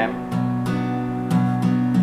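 Acoustic guitar strumming a B minor chord, about five strokes in a steady rhythm.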